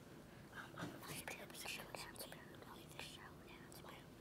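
Faint whispering of several children talking quickly to one another, conferring over a quiz answer.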